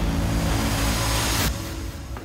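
Trailer sound effect: a loud rushing whoosh over a low, steady music drone, cutting off abruptly about one and a half seconds in and leaving the quieter music.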